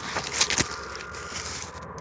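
Close rustling and crunching of someone moving through dry leaf litter, twigs and stones, with a couple of louder crunches about half a second in. The rustle drops away abruptly near the end.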